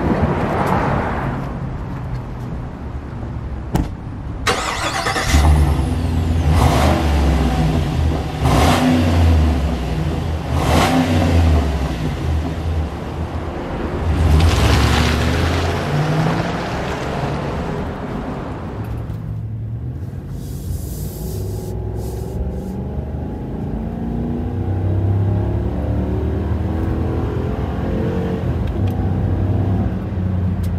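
A 2020 Chevrolet Silverado 2500HD pickup's V8 engine running and revving in repeated surges as the truck pulls away, after a sharp knock about four seconds in. Later it is heard from inside the cabin, quieter, its pitch rising steadily as the truck accelerates.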